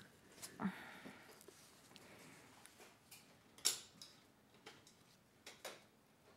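Faint room tone in a quiet room, with a few soft clicks and small handling noises; the loudest click comes a little under four seconds in, with two more near the end.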